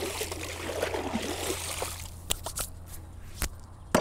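A hand splashing and swishing the water of a swimming pool at its edge for about two seconds. A few light clicks follow.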